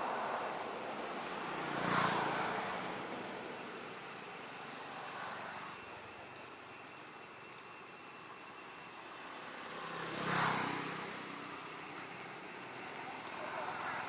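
Road traffic: vehicles passing one after another, each swelling and fading away, the two loudest about two seconds in and about ten seconds in.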